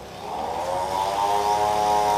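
A motor engine drones steadily and grows gradually louder, as if it is drawing nearer.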